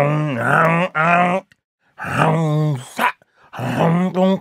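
A man's voice making wordless low vocal sounds in three bursts with short pauses between them, the pitch held and bending.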